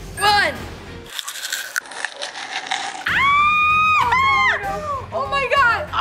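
Short squealing vocal reactions of disgust over background music, with a high cry held steady for about a second just past the middle.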